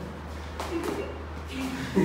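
Faint, brief voices in a quiet classroom over a low steady hum.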